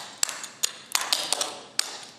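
Clogging shoe taps striking a wooden floor in a quick, uneven run of about eight sharp metallic taps: a clogging rocking-chair step, a double step, brush up and a basic.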